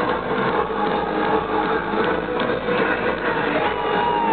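Loud live electro-industrial music from a band in concert, heard from inside the audience. It is dense and steady and sounds dull, with no top end.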